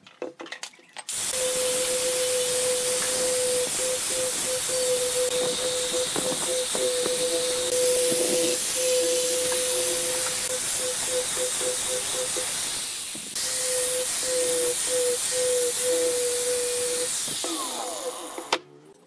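Angle grinder fitted with a sanding disc, sanding the curved edge of a pallet-wood board: a loud, steady hiss over a motor whine that breaks up now and then. It starts about a second in, dips briefly about two-thirds of the way through, and stops just before the end.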